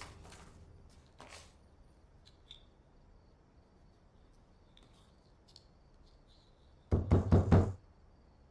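A quick run of hard knocks, lasting under a second, near the end; before that only faint room tone with a few soft clicks.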